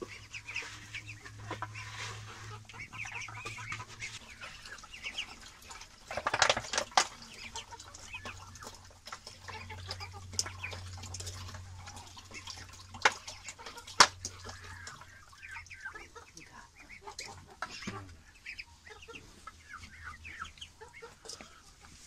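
A flock of young ducks calling and chattering as they crowd around and feed on wet mash. A few sharp knocks come through, the loudest about two-thirds of the way in.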